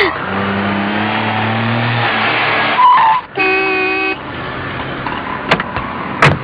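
A car running along the road, its engine noise steady with a slight upward drift in pitch. About three seconds in, a car horn sounds once for under a second.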